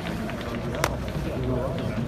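Several people talking in the background, with one sharp click a little under a second in.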